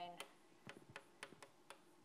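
Chalk on a blackboard while writing: faint, irregular ticks and taps as the chalk strikes and lifts off the board.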